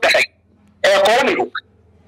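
Speech only: a man talking in two short bursts broken by pauses.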